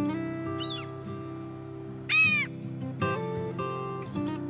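Acoustic guitar music, with one loud bird call about two seconds in: a short cry that rises and falls in pitch. A fainter call comes about half a second in.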